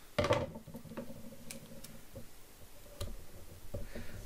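Hands handling a small piece of sellotape and paper on a wooden table: a short rustle just after the start, then a few light clicks and taps as the tape is pressed down.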